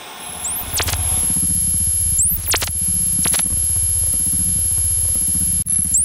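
Electronic glitch sound design for an animated logo ident: static hiss fading into a low pulsing synthesizer hum under a steady high-pitched whine. It is broken by a few quick rising sweeps and short sharp glitch zaps.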